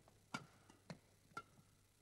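Badminton rackets striking the shuttlecock during a rally: three faint, sharp clicks about half a second apart.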